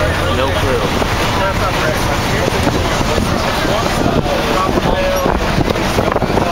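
Moving school bus heard from inside: a loud, steady rush of wind through the open windows over engine and road rumble, with young voices talking over it.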